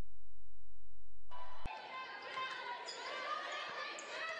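A steady, pulsing low hum for about the first second and a half, cut off by a sharp click. Then live basketball-game sound in a gym: voices of the crowd and players, and a bouncing ball.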